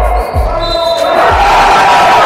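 A basketball bouncing on a wooden gym floor, a few dull thuds, with players' voices echoing in the sports hall.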